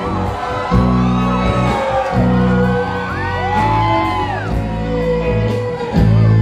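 Live band playing an instrumental passage: bowed violin, electric guitars, drums and bass. Long sliding high notes rise and fall about halfway through.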